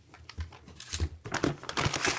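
Shopping bag and plastic food packaging crinkling and rustling as hands rummage through groceries in the bag, starting faintly and growing busier over the second half.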